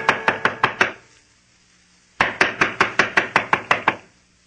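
Rapid knocking on a wooden door, a radio sound effect: a run of quick raps that stops about a second in, a pause, then a second, longer run of about ten raps.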